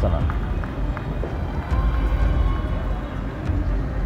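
Outdoor background noise: a steady low rumble with faint voices in the distance and a few light clicks.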